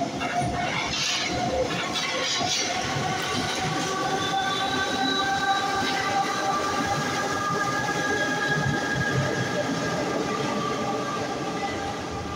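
Paris Métro MF 67 train running on steel rails through the station, a dense rumble with several steady high whining tones from the motors and wheels. It eases off a little near the end as the train moves away into the tunnel.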